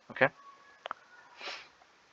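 A short sniff, a soft breathy hiss about halfway through, preceded by a faint click, after a spoken "okay".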